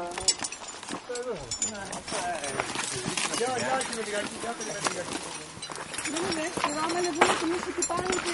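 Indistinct chatter from several people, with footsteps scuffing on a stony trail and sharp clicks now and then.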